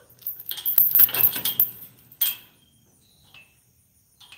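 A bunch of keys jangling and clinking against metal: a long rattle of over a second near the start, then one short jingle a little after two seconds in, as a gate lock is worked.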